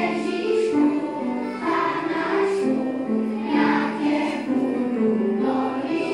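A choir of young kindergarten children singing a Christmas song together, the melody moving in steps from note to note.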